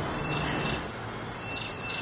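Birds chirping: a few short, high calls near the start and again about a second and a half in, over a steady background hiss.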